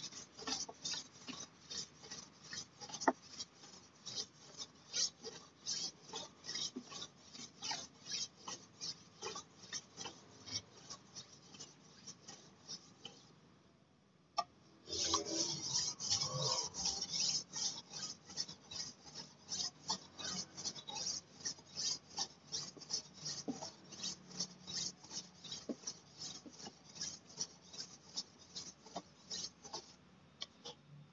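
Steel golok (machete) blade being sharpened on a whetstone: a rhythmic scraping of steel on stone, about two to three strokes a second. The strokes stop for a second or so midway, then start again louder.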